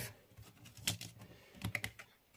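Light clicks and taps of a card being picked up and handled on a woven placemat by hand: one or two soft knocks about a second in and a quick cluster of three near the end.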